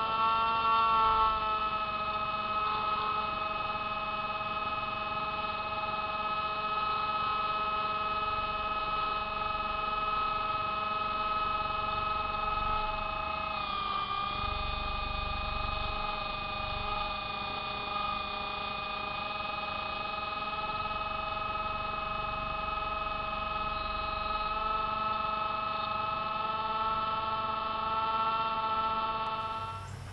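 Hubsan Spy Hawk RC plane's electric motor and propeller, heard through its onboard camera: a steady high whine of several tones, dipping slightly in pitch about a second in and again around fourteen seconds in.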